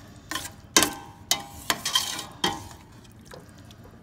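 A metal spoon stirring shrimp and vegetables in a stainless steel pot, knocking and scraping against the pot about six times in the first two and a half seconds, some strikes with a brief metallic ring. The stirring then goes quieter.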